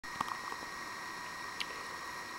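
Steady faint room hiss with a thin high hum, broken by a couple of small clicks, one just after the start and one about one and a half seconds in.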